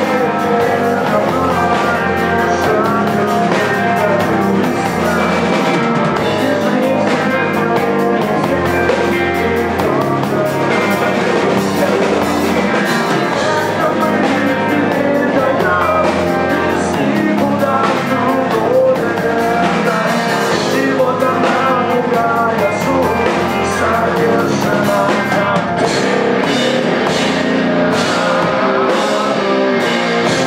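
Live rock band playing loud and without a break: electric guitar, bass guitar and drum kit with steady cymbal hits, with the singer's vocals over them.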